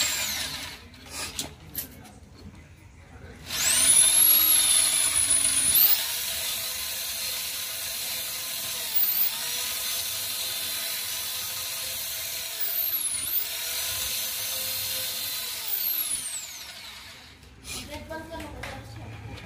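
Corded electric drill spinning a steel cable inside a motorcycle exhaust header pipe to scour out carbon. The drill winds down right at the start, then after a few quiet seconds spins up with a rising whine about three and a half seconds in. It runs steadily, dips in speed twice, and winds down shortly before the end.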